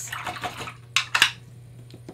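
Paintbrush swished in a water basin, then tapped twice on its rim: two sharp clicks about a second in, the loudest sounds.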